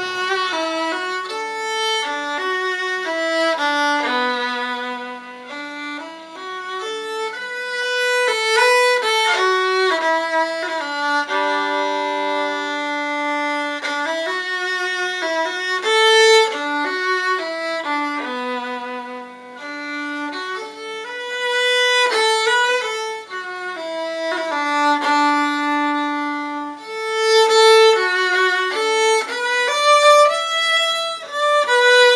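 Solo, unaccompanied fiddle playing a slow Irish air, with long bowed notes that step up and down in pitch, one held for about three seconds near the middle.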